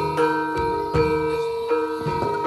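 Javanese gamelan playing: bronze metallophones and gongs ringing in a steady run of struck notes, with sharper strokes roughly twice a second.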